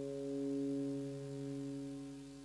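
A single held note from an amplified rock band, likely electric guitar and bass, ringing out and slowly fading as a song ends.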